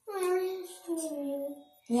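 A child's voice singing or sing-songing two drawn-out notes, the second slightly lower than the first, without clear words.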